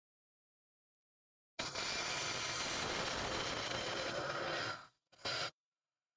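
Turning gouge cutting into a spinning wet spalted beech log on a wood lathe: a steady rough shaving noise starts about a second and a half in and cuts off sharply near five seconds, followed by one brief burst.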